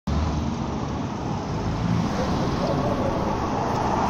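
City street traffic: a steady wash of car engine and tyre noise from vehicles passing close by.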